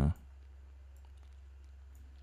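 Faint computer mouse clicks over a steady low hum.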